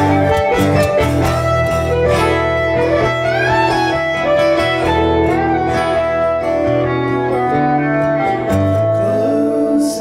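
Fiddle and acoustic guitar playing together live: a bowed fiddle melody with sliding notes over a strummed acoustic guitar, with no singing.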